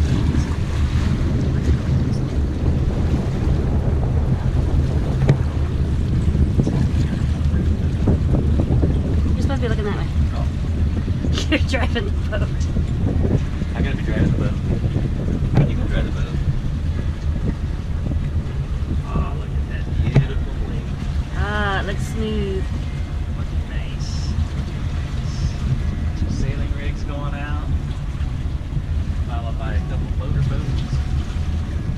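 Motor cruiser's engine running steadily at low speed, a low even hum, with water washing along the hull and wind buffeting the microphone.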